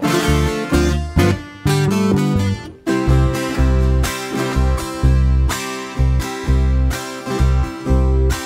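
Colombian tiple, a twelve-string instrument, strummed in a lively rhythm over electric bass notes, with a short break just before three seconds in before the strumming picks up again.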